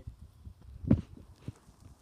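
A single sharp thump about a second in, over a low rumble.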